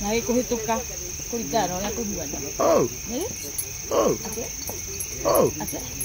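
Crickets chirping steadily in the night background. Human voices are heard over them, with three loud vocal swoops falling in pitch, roughly one every second and a half.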